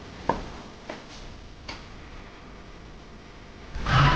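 A few short, light clicks in a quiet room. The loudest comes about a third of a second in, and three fainter ones follow over the next second and a half. A louder sound starts just before the end.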